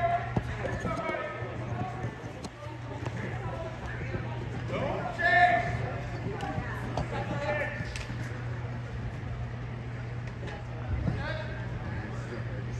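Ambience of an indoor box lacrosse game: distant shouting voices on and around the floor, with a louder shout about five seconds in. Scattered sharp knocks of lacrosse sticks and ball sound over a steady low hum.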